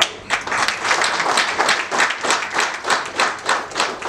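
Audience applauding, the clapping starting a moment in.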